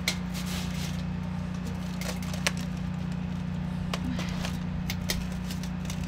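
Aluminium-foil packets lifted off a charcoal grill grate and set down on a baking sheet, a few scattered light clicks and crinkles, over a steady low hum.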